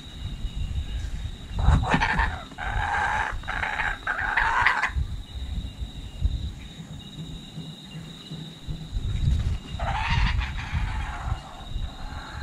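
Laughing kookaburra giving rough, raspy calls in two bouts, one about two seconds in lasting some three seconds and another near ten seconds, over a low wind rumble on the microphone.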